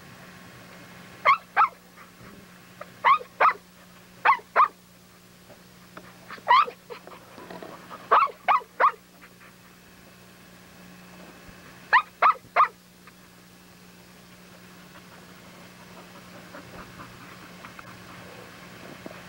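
Pit bull barking in short runs of two or three sharp barks, six runs spread over the first two-thirds, over a steady low hum.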